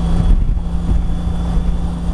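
Honda CTX1300's V4 engine running steadily at highway speed, with wind and road noise.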